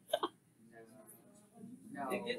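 Faint, distant voices of students talking in a classroom, with a short voiced sound with a falling pitch just after the start.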